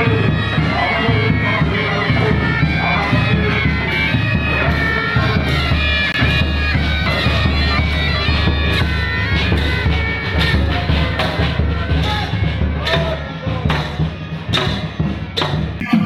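A marching pipe band: bagpipes play a tune over their steady drone, with drums beating in time.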